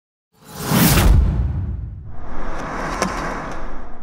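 Trailer sound design: a whoosh with a deep low boom swells in about half a second in. It is followed by a second, longer swell of rushing noise with a sharp click near the three-second mark.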